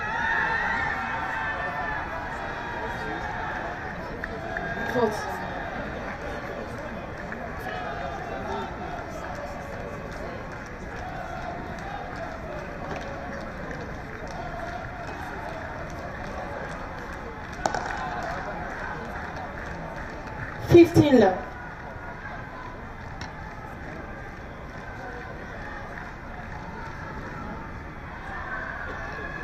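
Padel point being played: the ball popping off the rackets in a rally over a steady murmur of spectator voices. A short loud burst comes about three quarters of the way through.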